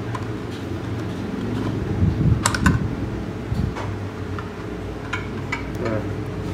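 Hands handling a small plastic toy remote controller and its thin metal telescopic antenna on a table: scattered short clicks and taps, a few in quick pairs, over a steady low hum.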